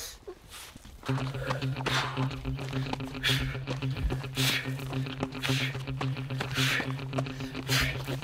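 A jogger's heavy breathing, one hissy breath about every second, over a steady low hum that starts about a second in.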